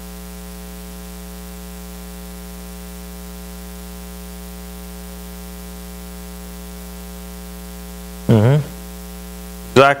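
Steady electrical hum with a stack of overtones, unchanging throughout. About eight seconds in, a short spoken answer cuts through it, and the next words start just at the end.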